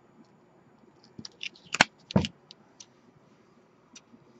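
A cardstock frame with clear plastic window sheeting stuck across it is handled and set down on the work mat: a run of small crackles and taps starting about a second in, with two sharper clicks and a dull knock about two seconds in.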